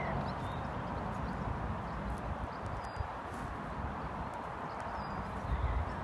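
Hooves of a heavy black cob walking on grass, against a steady background rush, with a few faint bird chirps.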